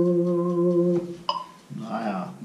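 Casio XW-G1 synthesizer keyboard playing held chords in an organ-like sound, each starting with a short tick; the chord stops about a second in, another sounds briefly and fades. A man's voice comes in near the end.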